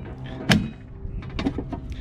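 Eaton PV AC disconnect switch thrown to off with one sharp clack about half a second in, then a few lighter clicks and rattles as its metal enclosure door is opened. A steady low hum runs underneath.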